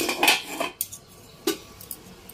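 Steel spoon scraping and clinking against a metal kadai while stirring scrambled egg: a quick run of scrapes and clinks in the first second, then one sharp clink about halfway through.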